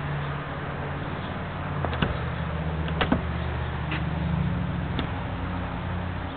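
A few sharp clicks and knocks, about two, three and five seconds in, as a car's convertible top is pulled and worked at the rear, over a steady low hum.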